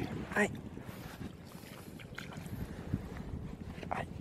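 Wind rumbling on the microphone over shallow, stirred-up tide-pool water, with a few small clicks. A brief vocal sound comes just after the start.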